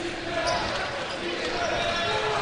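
A basketball being dribbled on a hardwood court over the steady noise and voices of an arena crowd.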